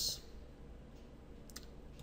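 A single computer mouse button click about one and a half seconds in, over a faint low hum.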